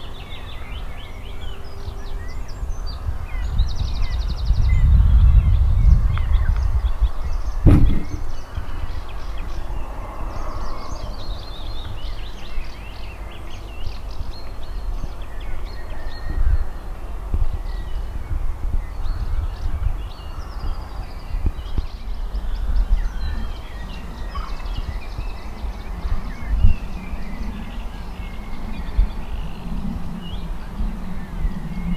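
Outdoor ambience: a gusty low rumble of wind on the microphone, heaviest a few seconds in, with small birds chirping and trilling in the background. A single sharp knock comes about eight seconds in.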